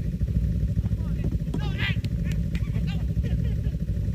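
Snowmobile engines running at idle, a steady low rumble. A few short high-pitched calls come around a second and two seconds in.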